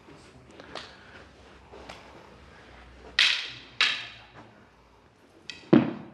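Sharp clacks and smacks from a stick-disarm drill with a rattan practice stick: two loud cracks about half a second apart just past the middle, then a heavier thud near the end.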